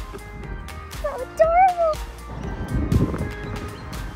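Background music with held notes, with a short rising-then-falling pitched vocal sound about a second and a half in. Near the end, a rough rustling crunch as a Shetland pony pulls and chews long grass from a hand.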